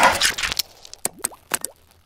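Animated-logo sound effect: a quick cluster of sharp clicks and a swish, then a few separate pops with short rising chirps, fading out shortly before the end.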